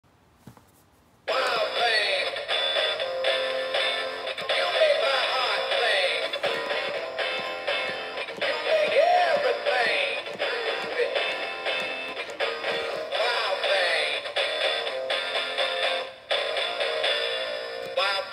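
Rocky Rainbow Trout animatronic singing-fish plaque playing its song with singing through its small built-in speaker, starting about a second in. The sound is thin, with little bass, and the toy is in working order.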